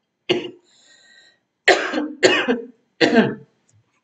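A person coughing: one short cough just after the start, then three louder coughs in a row about half a second apart.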